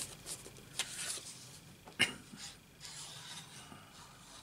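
Cardstock being handled and shifted on a craft mat while liquid glue is applied: faint paper rustling with a couple of light taps, about one second and two seconds in.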